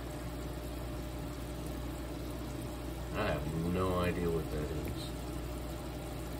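Aquarium filter running: a steady low hum with water moving and trickling. A brief murmur of a man's voice comes about halfway through.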